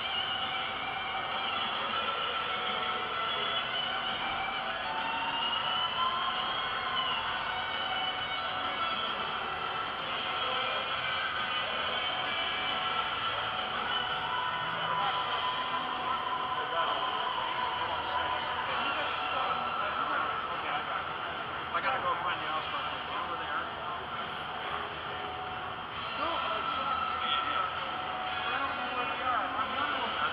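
Crowd babble in a large exhibition hall, many people talking at once, with music playing in the background.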